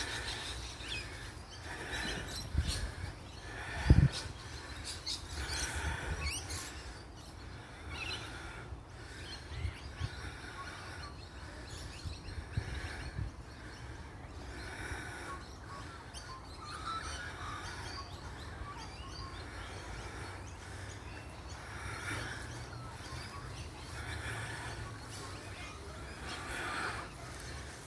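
Corellas calling at intervals, short harsh calls every second or two over a low steady outdoor rumble. A sharp low thump about four seconds in is the loudest sound.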